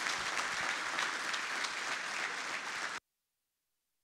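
Audience applauding with dense clapping at the end of a talk; the sound cuts off abruptly about three seconds in.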